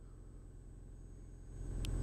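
Car engine idling, a low steady rumble heard from inside the cabin, growing louder in the last half second.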